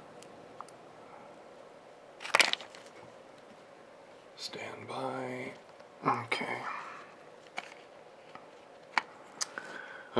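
A man's voice humming and murmuring quietly without clear words, with a short sharp noise burst about two seconds in and a few faint clicks near the end.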